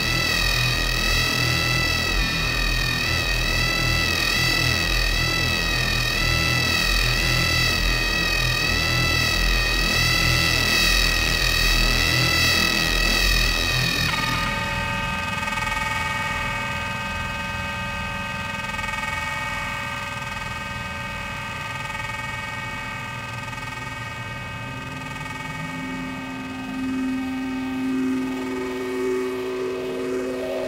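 Horror film score: a dense, wavering electronic drone over a deep rumble, which changes suddenly about halfway through to a thinner, steady held chord, with a tone rising in pitch near the end.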